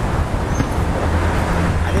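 Street traffic noise: a steady rumble of road vehicles, with a low engine drone that strengthens about halfway through.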